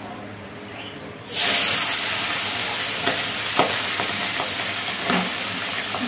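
Small turmeric-marinated pabda fish hitting hot oil in a cast-iron kadai: a loud, steady sizzle starts suddenly about a second in and keeps going, with a few sharp spits and crackles of oil.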